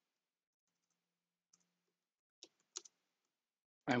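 A few faint computer keyboard key clicks, about two and a half seconds in.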